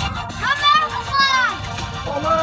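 A high-pitched voice gives two drawn-out, arching calls over background music and a steady low rumble from the moving car.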